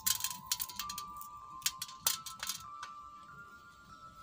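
Soft background music of long held notes that step upward. Over it, a kitchen knife clicks and scrapes against a stainless steel plate while green chillies are slit open, with several sharp clicks in the first two and a half seconds.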